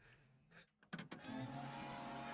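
Near silence, then about a second in a click and a steady low-pitched hum from the preview video's sound track begins.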